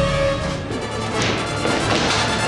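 Dramatic film soundtrack music, which about half a second in gives way to a denser, noisier stretch with several crashing hits as a scuffle breaks out.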